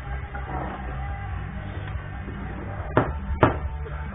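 Background music with a steady bass runs throughout. Near the end come two sharp clacks about half a second apart, typical of the puck and rods on a table-hockey game.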